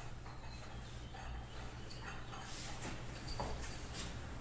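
Metal thurible and its chains clinking softly as it is swung, in short irregular clinks with a sharper one about three seconds in.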